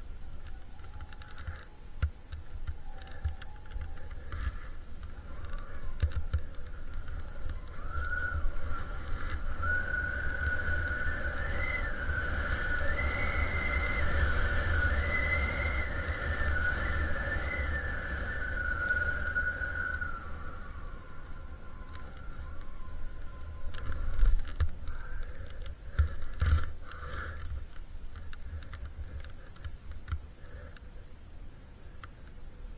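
Wind buffeting the microphone, with a few handling knocks. From about eight seconds in, a faint high whine wavers up and down in pitch for around twelve seconds, then fades.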